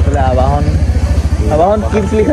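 A voice talking over a steady low engine rumble from a motor vehicle.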